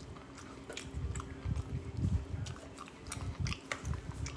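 A person chewing a mouthful of food with the mouth closed, a steady run of soft chews with small wet clicks.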